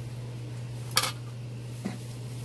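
Chopsticks clinking against a dish: one sharp clink with a short ring about a second in, and a fainter one near the end. A steady low hum runs underneath.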